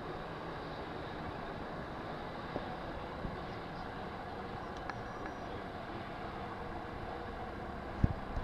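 Steady outdoor background noise, an even low hiss, with a few faint clicks about a third and halfway through.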